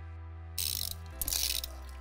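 Trial bike's rear freewheel ratcheting in quick ticks as the bike rolls, coming in about half a second in.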